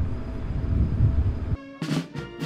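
A loud, unsteady low rumble, cut off suddenly near the end. Then a military brass-and-drum band strikes up with drum strokes and brass.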